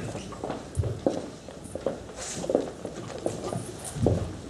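Irregular knocks and bumps of people sitting down at a table set with microphones: chairs moving and the table and microphones being jostled.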